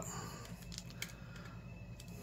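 Faint, scattered clicks and scrapes of a small screwdriver prying at the plastic tabs of a Kodak EasyShare C143 compact camera's top case, with one slightly sharper click about a second in.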